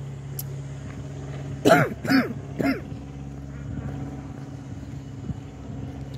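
A woman clears her throat about two seconds in, over a steady low hum of outdoor background noise.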